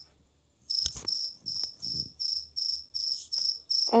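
A cricket chirping in a steady rhythm, about three high chirps a second, starting about two-thirds of a second in. A sharp click comes about a second in.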